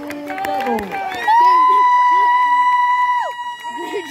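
A spectator's high held cheer, starting about a second in and lasting about two seconds before its pitch drops away, over shouts and chatter from a football crowd celebrating a touchdown.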